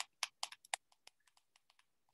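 Faint keyboard typing: a quick run of light key clicks in the first second.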